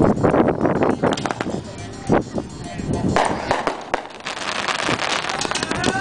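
Desert Opponent consumer firework cake firing: a series of sharp bangs from shots bursting overhead, coming faster near the end, with voices in the background.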